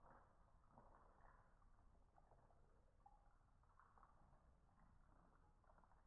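Very faint sound of milk being poured in a thin stream into a bowl of crunchy muesli and puffed rice, with small irregular crackles.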